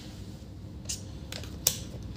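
A few light clicks, the loudest about a second and a half in, from handling a digital multimeter and its probe leads while it is being set up for a continuity check.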